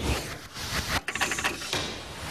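A TV graphics transition sound effect under an animated countdown caption: a noisy swish with a quick run of clicks in the middle and a brief drop just after a second in.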